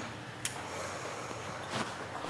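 Quiet steady background ambience with a sharp click about half a second in and a short rustle near the end, as a person lying on a tiled bench shifts position.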